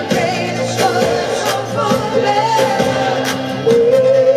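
Live acoustic performance: strummed acoustic guitar accompanying sung vocals, getting louder near the end.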